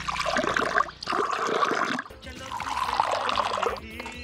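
Hot coffee poured in a long stream from a height into small glass tumblers, three pours of about a second each.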